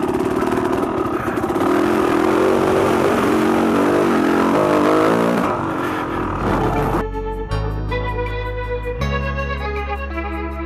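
Dirt bike engine running hard on a trail, its pitch rising and falling with the throttle. About seven seconds in, it gives way to music with sustained keyboard notes and a bass line.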